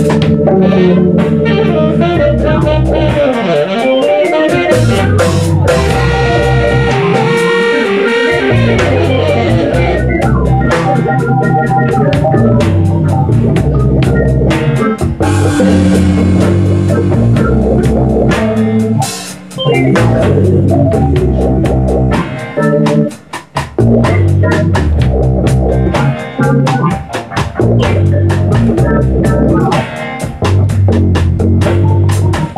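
Live band music with a steady beat, played loud and continuously, with a couple of brief drops in the middle.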